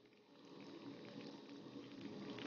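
Egg-battered spinach leaves frying in oil in a pan: a faint, steady sizzle and bubbling, very quiet at first and a little louder after about half a second.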